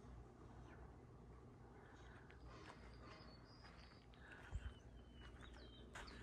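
Quiet outdoor ambience with a few faint, short, high bird chirps, first about halfway through and again near the end. One soft low thump comes about four and a half seconds in.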